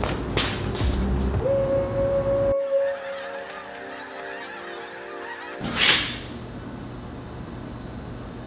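A funnel blown like a horn as a summoning call, giving one steady honking note starting about a second and a half in. It cuts to a flock of birds calling, followed by a brief whoosh near six seconds.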